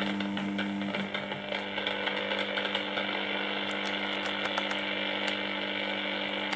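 Portable radio's speaker giving a steady crackling buzz over a low hum. This is interference picked up from the running fluorescent lamps and their ballasts.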